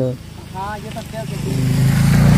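A motor vehicle's engine approaching, starting about halfway through and growing steadily louder, with a steady hum and a rushing noise above it.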